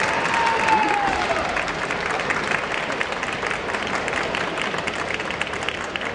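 Spectators in a large hall applauding a kendo point as the referees' flags go up. A fighter's long kiai shout falls in pitch and ends about a second in, and the clapping carries on after it.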